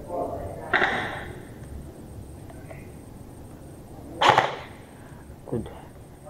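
Airsoft gunfire echoing in a large warehouse: two loud sharp cracks, about a second in and about four seconds in, the second the loudest, and a fainter one near the end.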